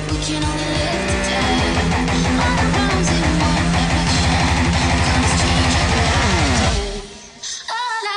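Jackson V-shaped electric guitar played over a loud drum and bass backing track, with a tone rising steadily in pitch through the middle. About seven seconds in the music cuts off suddenly, leaving a brief quiet gap before it starts again.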